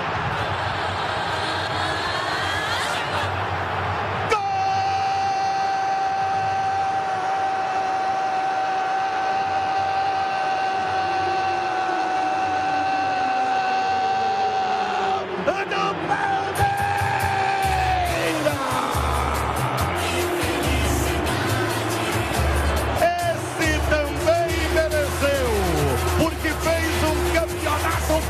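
A radio football commentator's long drawn-out goal shout, held on one steady pitch for about ten seconds. About halfway through, the shout gives way to the station's goal music, with a pulsing beat and sliding pitches.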